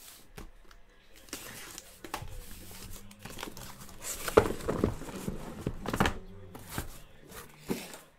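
A cardboard case of trading-card boxes being opened by hand: the flaps are pulled back and the shrink-wrapped boxes inside are handled. It is an irregular run of rustling and scraping with several sharp knocks, the loudest about four and a half and six seconds in.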